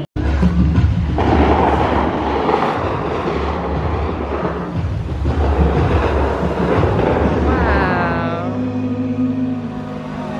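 Fountain-show music over outdoor loudspeakers with a heavy, steady bass line. A dense rushing hiss of spraying water jets sits over it from about a second in, thinning near the end.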